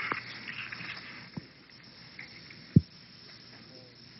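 A pause in a recorded talk: faint steady background hiss, with a small click about a second and a half in and a single brief thump near three seconds in.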